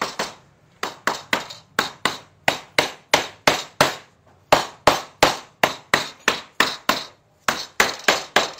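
Hammering on a wooden mortise-and-tenon frame, driving the tenons home into their mortises: a steady run of sharp blows, about three a second, with two short pauses.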